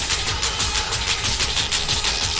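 Happy hardcore dance music from a live DJ mix playing, with a fast, steady beat over heavy bass.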